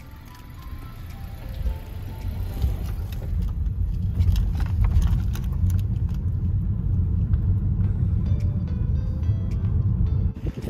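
Car driving slowly, heard from inside the cabin: a low, steady rumble of engine and tyres that grows louder over the first few seconds, with light background music.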